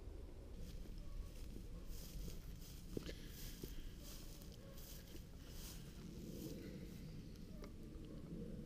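Faint, steady low outdoor noise with a few soft clicks and rustles.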